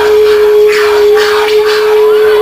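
A live band holding one long sustained note at the close of a song, steady in pitch and loud, with repeated noisy bursts over it.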